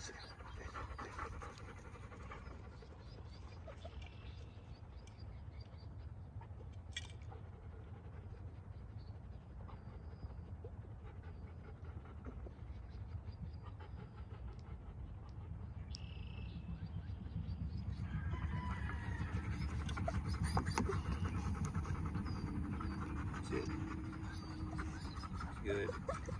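A young retriever dog panting from a retrieve, over a steady low rumble that grows louder in the last third.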